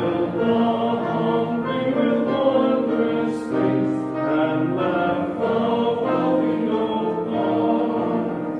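A small church congregation singing a hymn together, with slow, held notes.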